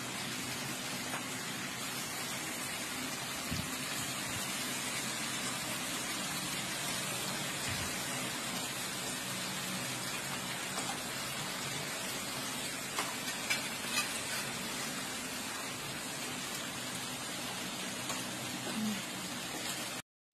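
Pork belly slices sizzling steadily in a griddle pan on a portable tabletop stove, with a few light clicks about two-thirds of the way through.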